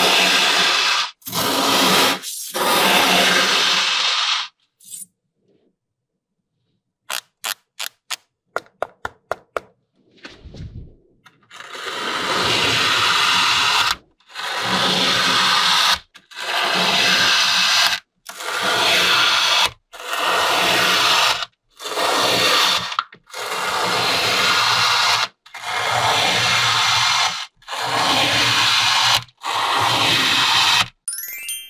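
Kinetic sand being cut and scraped with hand tools. First come a few long gritty scraping strokes of a knife through the packed sand. After a pause there is a quick run of light clicks, then a steady series of about ten long scraping passes, one every couple of seconds, as a comb tool is dragged through the sand.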